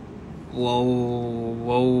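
A man's voice holding a long, low "ohhh" on one steady pitch, starting about half a second in and swelling slightly near the end.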